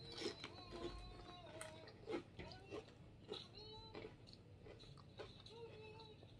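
Quiet close-up chewing of a tortilla chip with spinach dip, with soft mouth clicks scattered through. A faint voice wavers in the background now and then.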